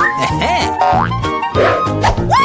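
Upbeat background music with a bouncy beat, overlaid with cartoon-style sound effects whose pitch slides up and arches back down several times.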